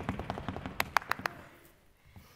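A quick run of sharp taps, loudest and most regular, about six or seven a second, a little under a second in, then fading away.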